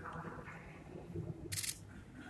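A camera shutter goes off once, a short sharp click about one and a half seconds in, over a low murmur of voices.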